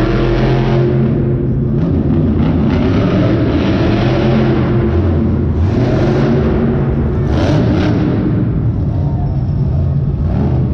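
Monster truck engines running on the arena floor, a loud steady rumble with engine harmonics that thin out about a second in and strengthen again around the middle. Monster Jam trucks run supercharged V8 engines.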